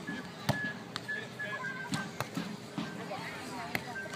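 Volleyball being struck by players' hands and forearms through a serve and the rally that follows: several sharp slaps at uneven gaps, over crowd chatter.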